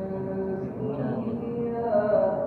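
A voice chanting a melodic religious recitation, holding long notes that slide from one pitch to the next.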